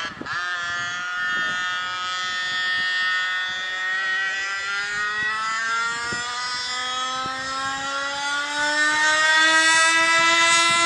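A 1/5-scale HPI Baja RC car's engine on a flat-out speed run, its pitch climbing steadily as the car gathers speed. It grows a little louder near the end as the car comes closer.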